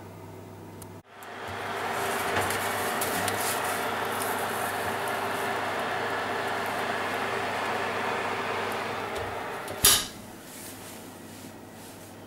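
A kitchen oven running with its door open, a steady even noise, while a framed plastic sheet is put in to heat. Near the end the oven door is shut with a single loud bang, after which the running noise is much quieter.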